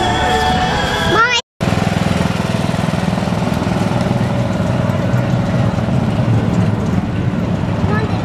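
Music for about the first second and a half, cut off by a brief dropout. Then a small engine runs steadily with a low, even hum as a barrel train of children rolls past.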